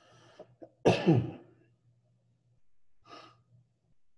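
A person sneezes once, loudly, about a second in, with a falling vocal sound. Short faint breaths come just before it, and a softer breathy noise follows near the end.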